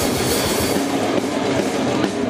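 Heavy metal band playing live, heard from a close drum-kit microphone: fast, dense drumming on kick drums and snare under distorted guitars, in a relentless rapid rhythm.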